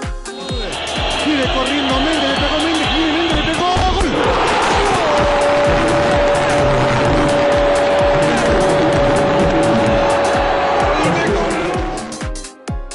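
A football commentator's excited call rising into one long held "gol" cry, over a loud stadium crowd roar as a goal goes in. A dance-music beat runs underneath. The roar swells about four seconds in, and the single steady cry starts about a second later and lasts some six seconds.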